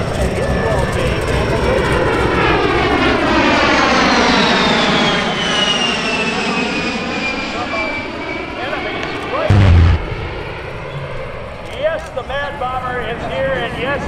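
An A-10 Thunderbolt II's twin TF34 turbofan engines whine as it flies past, the pitch falling steadily. About nine and a half seconds in, a pyrotechnic explosion goes off with a short, loud, deep boom.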